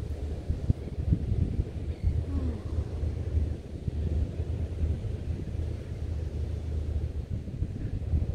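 Wind buffeting the microphone: a low, steady rumble that swells and dips in gusts.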